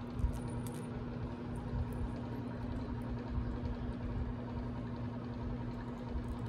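A steady low electrical hum under quiet room noise, with a few faint light ticks in the first second.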